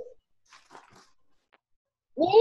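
Near quiet call audio: a faint, brief rustling noise about half a second in and a single small click a little later.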